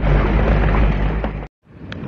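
Jeep driving over a rough, bumpy dirt road, heard from inside the cab: a loud, heavy low rumble with rattling road and engine noise. It cuts off suddenly about three-quarters of the way through.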